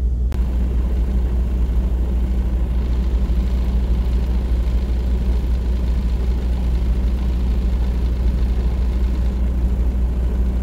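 Semi truck's diesel engine idling: a steady low rumble that does not change.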